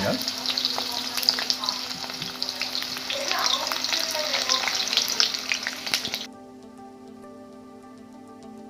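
Sliced onions, dry red chillies and whole spices sizzling and crackling in hot oil in a wok, the onions about half fried. The sizzle cuts off suddenly about six seconds in, leaving only faint steady tones.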